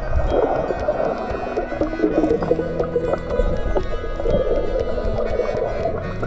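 Muffled underwater sound of water movement and bubbles as a swimmer moves at the surface, with frequent small pops and clicks, over steady background music.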